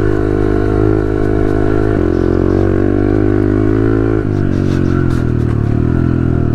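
2021 Honda CRF110F pit bike's small air-cooled four-stroke single, fitted with an aftermarket exhaust, running under throttle on a trail ride. It holds a steady note, rolls off about four seconds in, then picks up again near the end.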